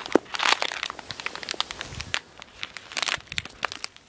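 A strip of plastic instant-coffee sachets being handled and crinkled by hand: a run of sharp crackles and crinkles, densest about half a second in and again about three seconds in.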